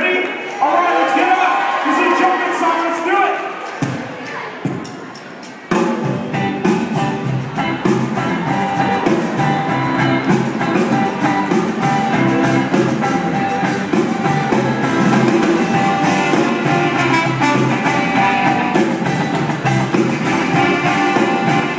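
Live rock band kicking into a song with drum kit, electric guitar and bass about six seconds in, after a few seconds of voices. The band then plays on at full volume.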